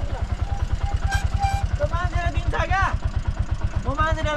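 Auto-rickshaw engine idling with a fast, even putter.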